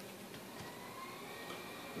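Quiet room tone: a low even hiss with a faint steady high-pitched whine and a couple of soft ticks.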